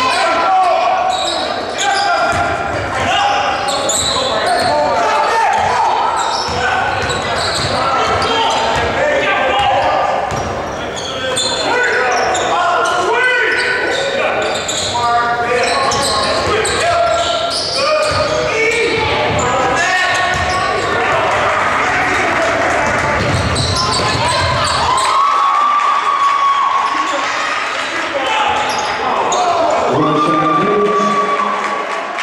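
A basketball being dribbled and bouncing on a gym's wooden floor during live play, with players and spectators calling out, all echoing in the large hall.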